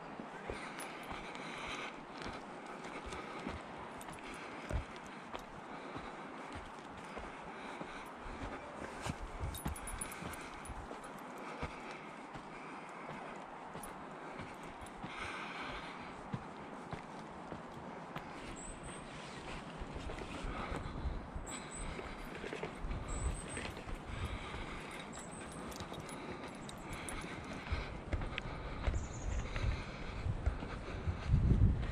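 Footsteps walking along a dirt forest trail at a steady pace, about one step a second. A few short, high chirps sound in the second half.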